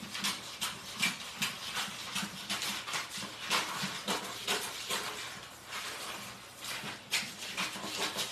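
Scissors cutting through brown craft paper in a long strip: a run of crisp snips, about three a second, with a short lull around six seconds in.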